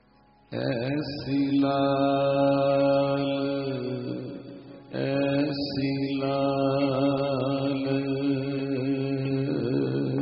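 Sikh kirtan: a group of men singing long held notes in a chant-like line, starting about half a second in, with a short break near the middle before a second long phrase.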